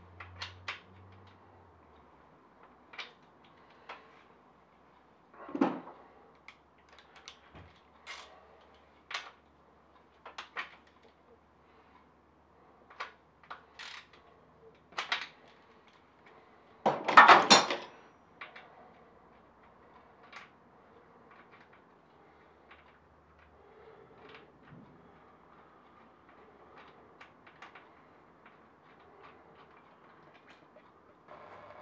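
Hand tools clinking and knocking against metal as bolts are loosened on a motorcycle's oil cooler: scattered single clicks, with one louder clatter lasting about a second around the middle.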